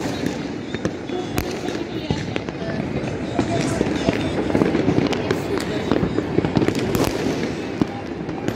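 Fireworks and firecrackers going off across the city in an irregular volley of sharp cracks and pops, with people's voices murmuring underneath.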